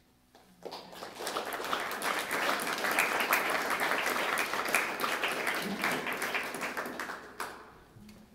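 A small audience applauding at the end of a piece. The clapping starts about half a second in, swells quickly, and dies away just before the end.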